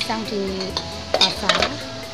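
Stirring and scraping in a wok and an aluminium cooking pot, with a few sharp utensil clinks against the metal about a second in.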